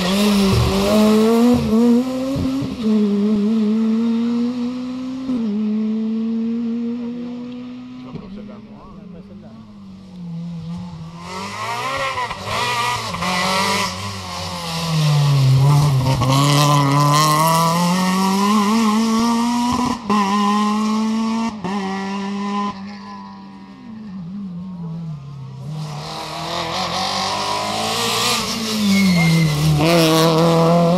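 Rally cars passing one after another on a tarmac stage. A Ford Fiesta goes by first, then a Renault Twingo, then a Citroën C2 arrives near the end. Each engine revs up and drops in pitch through gear changes and braking, growing loud as the car goes by, with quieter gaps between cars.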